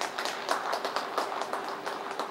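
Audience clapping, with many quick, irregular claps that thicken about half a second in, greeting a figure skater at the finish of her program. A faint steady hum runs underneath.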